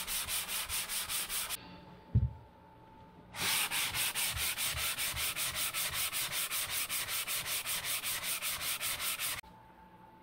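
Hand sanding block rubbed back and forth over dried drywall joint compound in quick, even strokes, about five a second, smoothing rough edges to a feathered edge. The sanding pauses for about two seconds, with a single thump in the pause, then resumes and stops shortly before the end.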